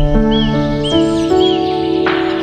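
Background music of held chords that change every half second or so, with a few short bird chirps repeating over it.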